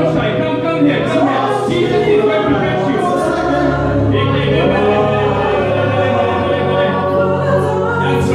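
Amplified worship singing through handheld microphones: voices singing a gospel song over steady backing music, loud and continuous.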